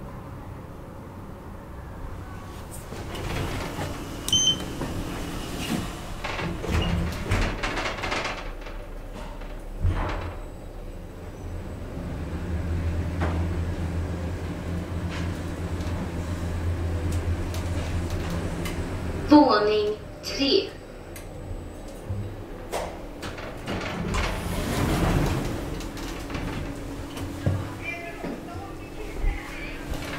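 2009 Schindler 3300 MRL machine-room-less traction elevator on a ride: the car doors slide shut with a few knocks, then a steady low hum for about eight seconds as the car travels. A short floor announcement sounds as it arrives, and the doors slide open near the end.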